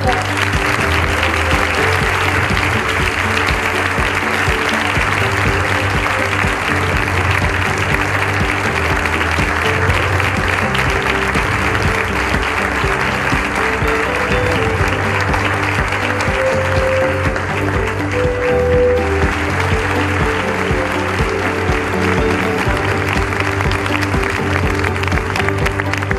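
Audience applauding steadily in a large hall over background music.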